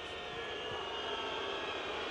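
Steady background noise of a football stadium's live broadcast sound during play, an even hum with no distinct events.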